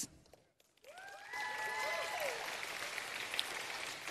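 An audience applauding, starting about a second in after a brief quiet, with a few voices cheering and whooping near the start of the clapping.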